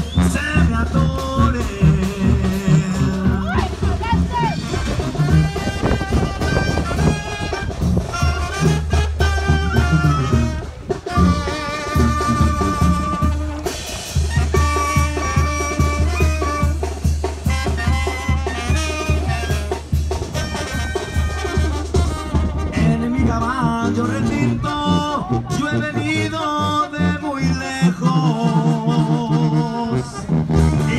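Live Mexican regional band music with brass over a steady bass beat.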